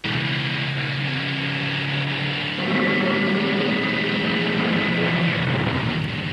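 Holden performance car's engine running hard at a steady pitch, starting suddenly and turning rougher and busier about two and a half seconds in.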